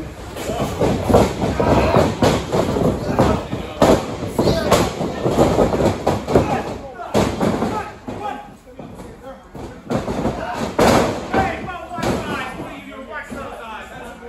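Wrestlers' bodies landing on a wrestling ring's mat in a series of heavy thuds, most of them in the first half and one more late on, mixed with voices.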